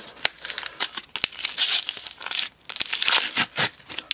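Paper-card and plastic packaging of a trading-card blister pack being torn open and crinkled by hand: an irregular run of crackles and sharp clicks, busiest about halfway through and again near the end.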